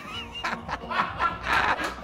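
A man laughing in a run of short bursts, with music underneath.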